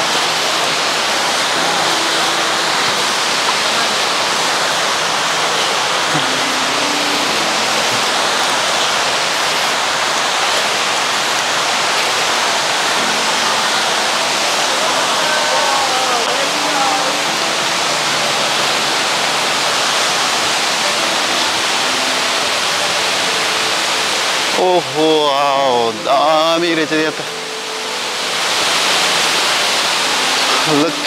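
Steady rush of falling and flowing water from a waterfall and its stream, an even, unbroken hiss. Faint voices come through about halfway, and a louder wavering voice or tune cuts in briefly near the end.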